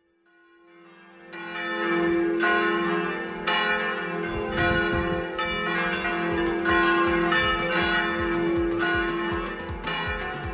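Church bells striking about once a second over a held low tone, in the intro of a song; a beat and fine high percussion join about halfway through.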